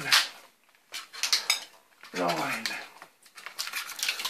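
Adhesive tape peeling off its roll in short crackling rips as it is pulled tight around a hockey stick blade wrapped in cling film. The rips come in three bursts: at the start, about a second in, and near the end.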